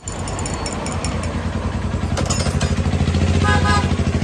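A vehicle engine running close by, its low, even pulsing getting steadily louder.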